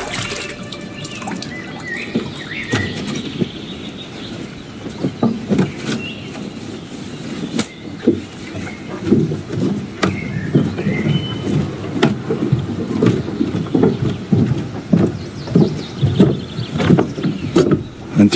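Lakeside ambience: irregular soft lapping and knocking of water against a wooden dock, growing busier after the first few seconds, with a few short high bird chirps.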